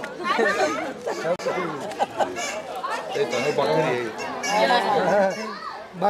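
Several people talking at once: overlapping chatter of a group standing close together.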